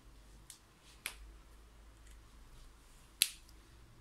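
Three short, sharp clicks against a faint room hum, the loudest a little after three seconds in.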